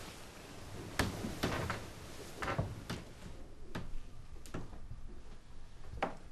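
A handful of sharp knocks and clicks at irregular intervals over quiet room tone, the sound of someone moving about a bedroom.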